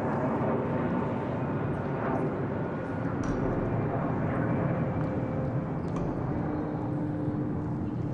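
Outdoor ambience: a steady low rumble with faint voices mixed in.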